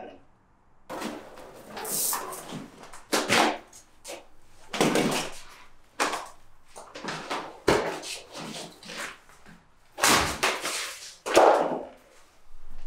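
Old vinyl flooring being ripped up by hand: repeated tearing and scraping with a few sharp knocks as pieces are pulled free and dropped.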